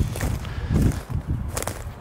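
Footsteps over ground littered with wood chips and cut brush, a few irregular steps with light crunching.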